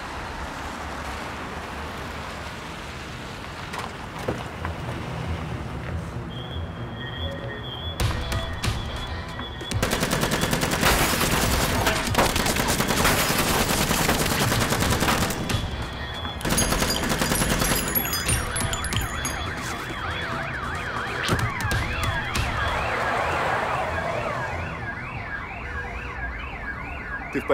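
A car drive-by shooting: rapid automatic gunfire with car glass shattering, loudest from about eight seconds in and lasting several seconds. After the shots a car alarm sounds in rising and falling sweeps that repeat steadily.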